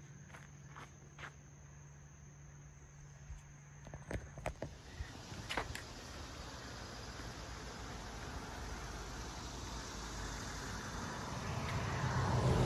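Footsteps on a dirt path with a faint steady insect drone, then from about halfway a car approaching along the road, its tyre and engine noise growing steadily louder.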